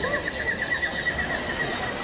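A high, fast-warbling animal call, held steady in pitch for about two seconds over faint background murmur.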